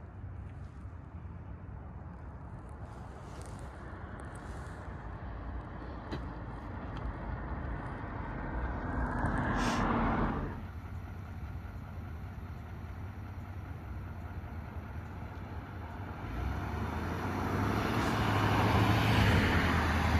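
A GMC Sierra 3500 pickup's 6.6-litre Duramax turbodiesel V8 and tyres, towing a fifth-wheel trailer and getting louder as it approaches over the last few seconds. About ten seconds in, a swell of noise builds and cuts off abruptly.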